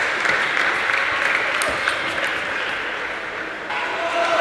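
Spectators applauding a won point, the clapping fading toward the end.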